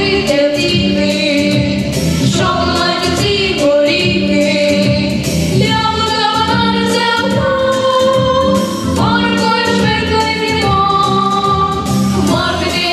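Girls' vocal trio singing a song over instrumental accompaniment with a steady beat, holding long notes.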